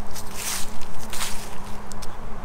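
Footsteps on grass and garden soil, a few uneven steps, over a faint steady low hum.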